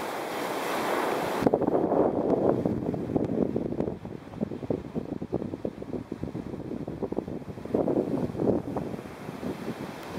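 Sea surf washing on a sandy beach as a steady hiss. About a second and a half in, this gives way to wind buffeting the microphone in irregular gusts, with the surf still behind it.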